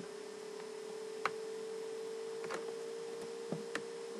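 A steady electrical hum runs under a few scattered, separate computer keyboard key clicks.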